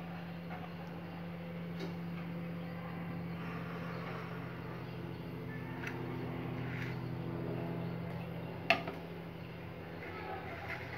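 A steady low machine hum runs throughout. Over it come a few light clicks of a knife and food being handled, and one sharp clink about nine seconds in, as the halves are set down on a china plate.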